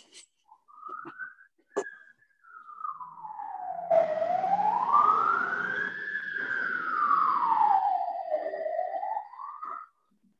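Emergency vehicle siren in a slow wail, its pitch sliding down, up and down again over several seconds, with a low rumble beneath it. There is a sharp click about two seconds in.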